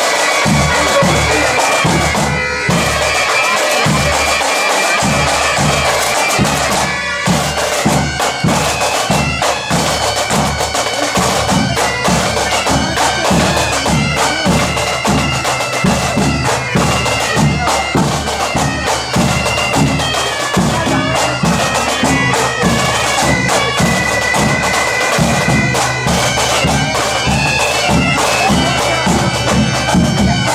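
Bagpipes and drums playing a march: a sustained pipe melody over a steady low drone, with a regular drumbeat of about two strokes a second.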